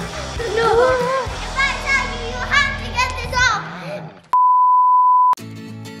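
Children's excited voices over music, then a loud, steady electronic beep tone about a second long that cuts off sharply, followed by the first strummed chord of the outro music.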